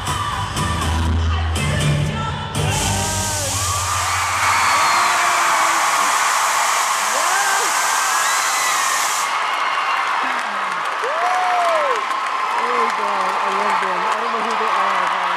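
Large audience cheering and screaming as pop music with a heavy bass beat ends about four seconds in. Many high individual screams rise and fall over the steady crowd noise.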